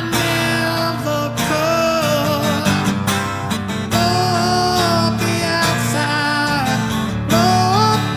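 Rock song cover: a solo singer holding long, gliding sung notes over a guitar-led backing track.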